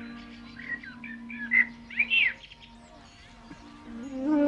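Birds chirping in a few short, rising-and-falling calls in the first half, over a held low drone note of background music that fades out near the end.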